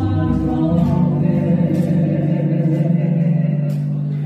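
A small group singing in harmony to acoustic guitars, settling into a long held note for the second half.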